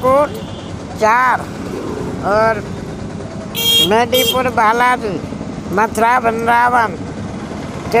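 A man talking in bursts, over a steady low background rumble. A brief high-pitched tone, like a horn toot, sounds about three and a half seconds in.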